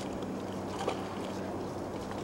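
A steady low hum, like a running motor, under an even wash of outdoor noise, with a faint tick about a second in.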